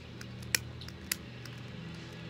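Two sharp clicks about half a second apart from a long-neck butane lighter's igniter, being worked to relight its flame after it has gone out, over a low steady hum.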